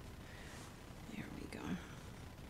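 Faint, indistinct voice murmuring briefly, about a second in, over quiet room tone.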